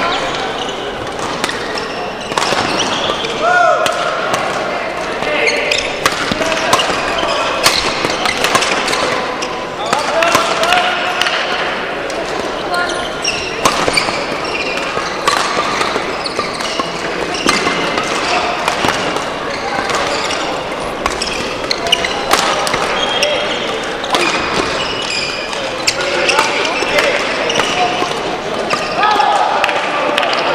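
Badminton hall ambience: frequent sharp clicks of rackets hitting shuttlecocks from several courts, short squeaks of court shoes, and voices, all echoing in the large hall.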